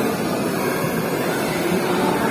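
Micro FPV racing drones' small propellers and motors whirring steadily, blended with the din of a busy indoor hall.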